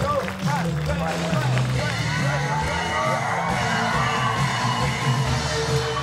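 A live band plays music with a steady bass line, while voices shout and cheer over it.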